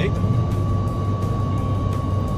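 Steady low road and engine rumble heard from inside a car cruising on a highway, with a faint, steady high-pitched whine running through it.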